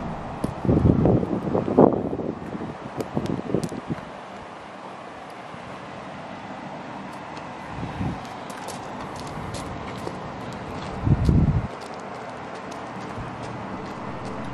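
Wind buffeting the microphone in irregular low bursts, the strongest near the start and again about eleven seconds in, over a steady outdoor hiss.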